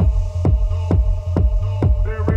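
Electronic dance music from a DJ set: a steady four-on-the-floor kick drum a little over two beats a second under a deep bass hum and held synth chords, with the hi-hats pulled out.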